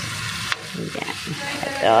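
Garlic and onion sizzling in butter in a large aluminium wok as canned corned tuna is tipped in and stirred with a metal spoon. One sharp click about half a second in.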